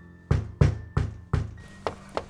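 A fist knocking on an apartment door: four firm knocks about a third of a second apart, then a lighter knock near the end.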